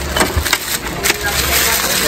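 Styrofoam packaging and a plastic bag being handled, with irregular crackles and taps as a robot mop is lifted out in its foam insert.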